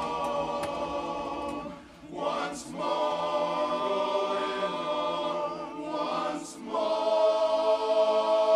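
Men's barbershop chorus singing a cappella, holding long sustained chords. The sound breaks off briefly about two seconds in and again near six and a half seconds, and the last chord comes in louder.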